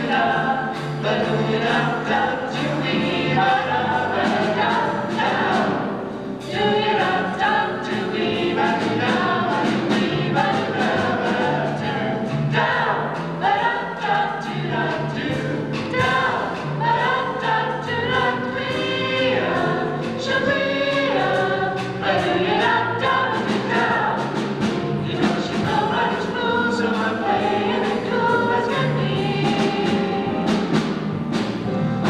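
Small vocal jazz ensemble singing a number in harmony.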